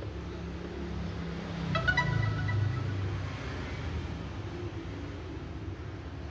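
A short electronic chime of several tones about two seconds in, over a steady low hum: the DJI Mini 3 Pro drone's startup tones as it restarts itself after IMU calibration.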